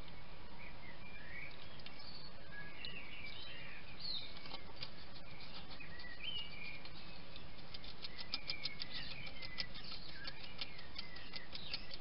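A bird singing a warbling song over a steady hiss. A quick run of faint clicks, several a second, comes in the last few seconds.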